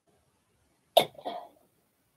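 A person coughing once, about a second in: a sharp first burst followed by a weaker second part.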